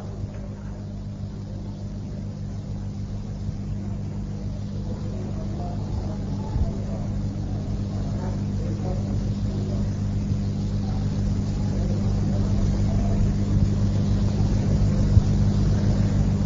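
Steady low hum and rumble in the background of an old Quran recitation recording, growing gradually louder, with faint indistinct voices, in the pause between verses.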